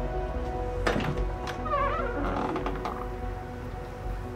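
Soft background music with sustained tones, and about a second in a single thunk as the front door is unlatched and pulled open.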